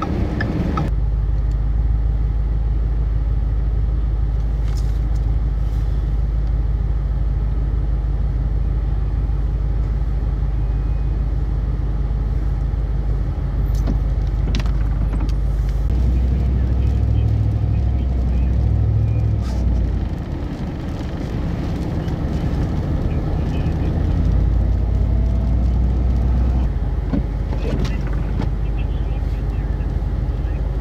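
A car cabin's steady low road and engine rumble while driving on snowy roads. It eases for a moment about two-thirds of the way through.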